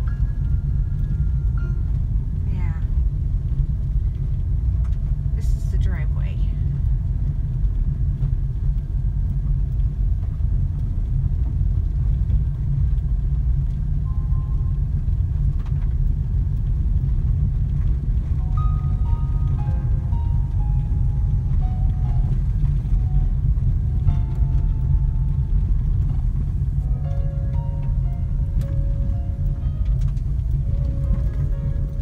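Car cabin noise while driving: a steady, loud low rumble of tyres on the road and the engine, heard from inside the car. Faint notes come and go above it.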